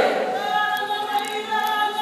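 Māori kapa haka group singing a cappella, their voices holding one long steady note together.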